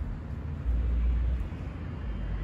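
Low rumble on a handheld microphone outdoors, swelling for under a second near the middle, over faint steady outdoor background noise.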